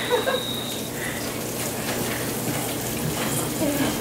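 Steady sizzling hiss of food frying in a pan on the stove.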